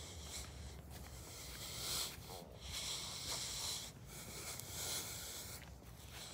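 A person breathing close to the microphone: faint, rhythmic breaths about every second and a half.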